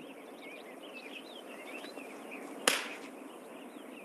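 Birds chirping over a steady outdoor hiss, with one sharp smack about two and a half seconds in.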